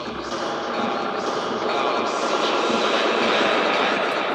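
Electronic dance music build-up with the kick and bass cut out: a rising, swelling noise sweep that grows louder over the four seconds.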